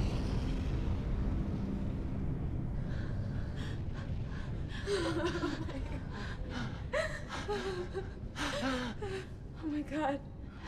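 Two women gasping, sobbing and whimpering in short broken breaths. Under the start, a low rumble dies away over the first couple of seconds.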